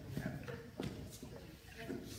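Quiet hall sound: faint voices in the background and a few soft knocks.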